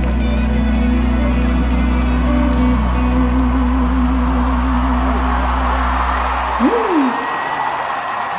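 Live band and singer ending a ballad with a long held note with vibrato over a steady bass. Near the end the bass drops out while the crowd's cheering and applause rise.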